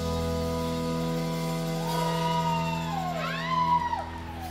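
A live band's amplified chord held steady, with a high tone sliding up and down over it in the second half, like a siren, before cutting off near the end.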